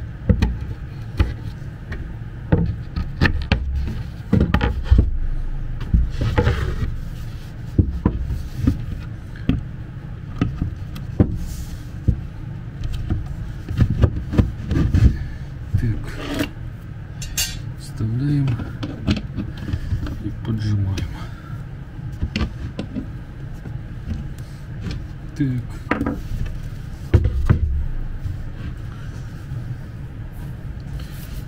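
Laminated particleboard drawer panels being handled and fitted together by hand: irregular knocks, taps and light scrapes of board on board and on the workbench.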